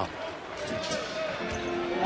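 Basketball arena game sound: crowd noise and on-court sounds at a moderate level, with faint held tones of music or voices in the background.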